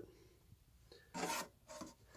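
Two short scrapes of metal being rubbed by hand, a louder one about a second in and a fainter one near the end. The sound comes from the round metal cover plate over the vacuum's blower port being handled and turned.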